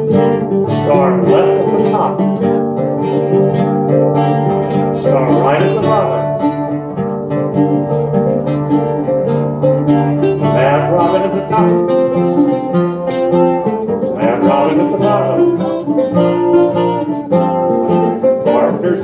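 Live acoustic dance music: a bouzouki and guitar plucking and strumming under a recorder carrying the melody of a baroque-era country-dance tune, playing steadily.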